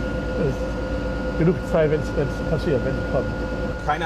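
A man speaking German over the steady low hum of a boat's engine, with a faint constant whine.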